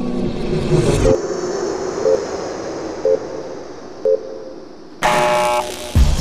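Intro sound effects for an animated digital-clock title: a fading whooshing rumble with four short electronic beeps, one a second, like a countdown clock. About five seconds in, a sudden loud new sound-effect hit cuts in.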